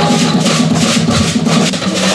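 Live Afro-Cuban rumba guaguancó: conga drums playing a steady pattern under the quick, even rattle of a gourd shaker, with held sung notes breaking off right at the start.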